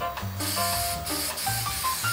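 Aerosol spray can hissing in spurts, starting about half a second in with two brief breaks. Background music plays underneath.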